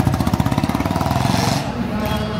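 A motor vehicle engine running close by with a rapid, even pulsing beat that eases off near the end, over voices from the street.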